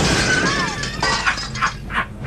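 Crash sound effect: the tail of a smash, with glass-like shattering and tinkling dying away, then about four separate clinks and clatters of debris settling.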